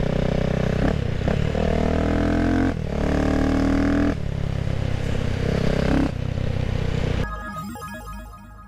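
CCM Spitfire Six's 600cc single-cylinder engine on the move, its revs climbing twice with a short break between, then running more steadily. Music takes over near the end.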